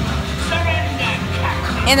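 Dark-ride soundtrack: background music and recorded voices over a steady low hum, with a falling pitched yelp near the end.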